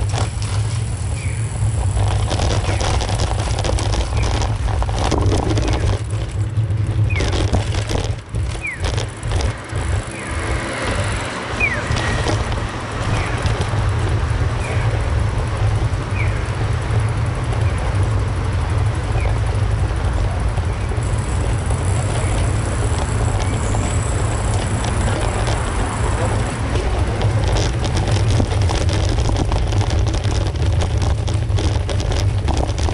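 Outdoor street ambience during a walk, dominated by a steady heavy low rumble, with a few faint short chirps in the first half.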